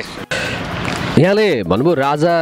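An elderly male Nepali folk singer begins singing unaccompanied about a second in, his voice sliding smoothly up and down in pitch.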